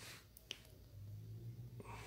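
Quiet room: a soft breath at the start, a single light click about half a second in, then a faint low hum.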